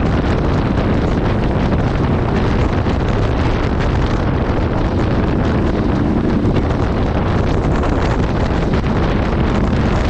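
Steady wind noise buffeting the microphone of a camera on a moving adventure motorcycle, with the engine and tyres on a gravel road running underneath.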